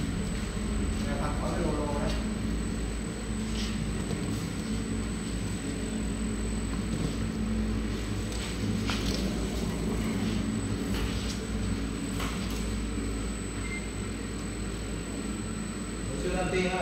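Noodle-sheet steaming machine running: a steady low machine hum from its motor-driven conveyor belt and pulleys, with a few light clicks and knocks now and then.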